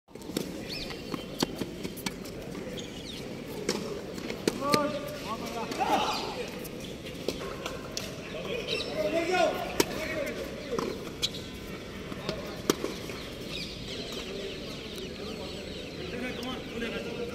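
Tennis racquets striking the ball in a rally: sharp, single pocks every second or two, over voices from the courts.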